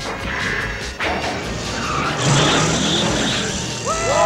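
Cartoon sound effects of a car skidding with tires squealing, over background action music, getting louder about a second in.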